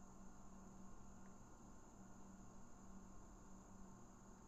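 Near silence: faint room tone with a steady hiss and a low hum that comes and goes.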